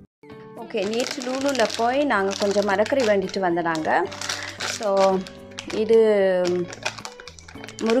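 A woman's voice talking over light background music with steady low notes.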